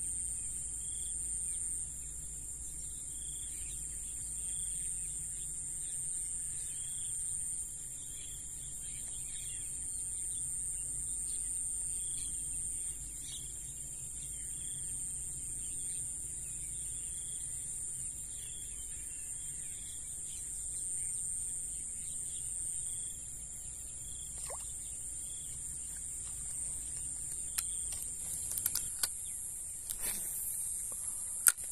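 Steady shrill chorus of insects, with a short high call repeating every second or two. A few sharp clicks come near the end.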